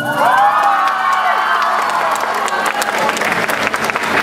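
An audience cheering with high-pitched yells, then applauding, the clapping growing denser through the last couple of seconds.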